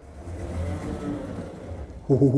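Passenger lift running: a steady low hum and whir of the cab in motion, swelling in over the first half second.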